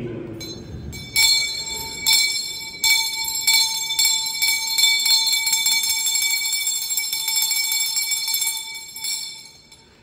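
A metal bell struck over and over, roughly once a second, its ringing carrying on between strokes and dying away near the end.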